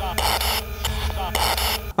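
Ghost-hunting spirit box, a radio sweeping rapidly through stations: choppy static broken every fraction of a second, with brief clipped voice-like fragments, one of which is heard as the word "stop".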